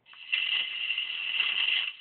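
Robby the Robot's rattling mechanical sound effect, played through the toy's built-in sound kit speaker, starting about a third of a second in and cutting off near the end.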